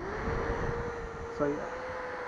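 Small battery-powered blower fan, a hand-cranked barbecue blower refitted with a little DC motor, switched on. The impeller spins up with a quickly rising whine, then runs at a steady pitch with a rush of air.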